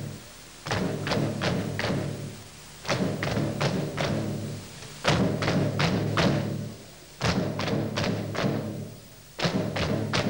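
Cobla band with timbales playing a folk-dance tune in short phrases of about two seconds, with brief dips between them. Four or five sharp percussive strikes mark each phrase.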